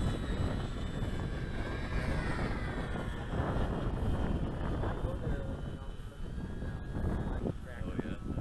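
Radio-controlled model warplane flying past, its motor-and-propeller whine bending down in pitch about two to three seconds in, over a steady rumble of wind on the microphone.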